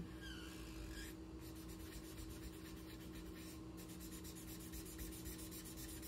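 Thick black marker squeaking and scratching on paper in quick, repeated back-and-forth strokes as a solid area is colored in. The sound is faint.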